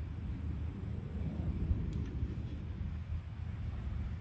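Steady low rumble of wind buffeting the microphone, with one faint tick about two seconds in.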